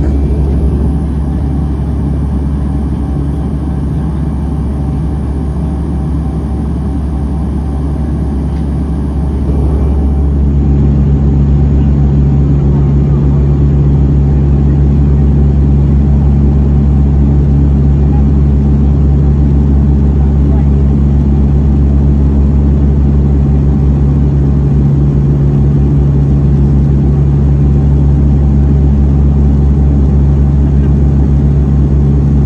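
Steady in-flight cabin drone of a Bombardier Dash 8-300 (Q300) twin turboprop's engines and propellers. About ten seconds in it changes to a slightly louder, steadier hum with a clear low pitch.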